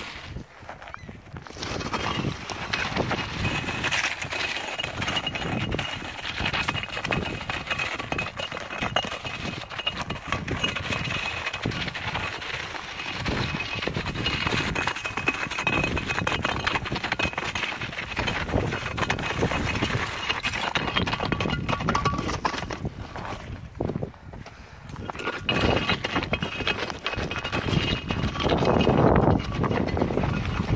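Concrete cinder block dragged by a cord over dirt and gravel, scraping and knocking continuously, with a short lull a little after the middle.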